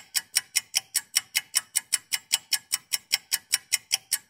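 A rapid, evenly spaced ticking sound effect, about seven sharp ticks a second, with nothing else heard between the ticks.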